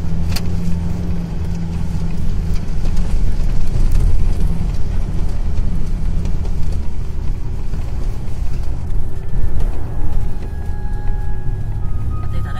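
Car driving on a rough unpaved dirt road, heard from inside the cabin: a steady engine drone with a continuous low rumble of tyres and suspension over the uneven ground.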